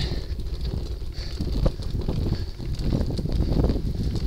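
Wind buffeting a camera microphone mounted on a bicycle, over the uneven rumble and rattle of the bike climbing a steep cobbled lane. There is one sharper knock partway through.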